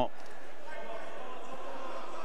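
Steady background noise of an indoor wrestling hall: an even, featureless hum and murmur with no distinct events.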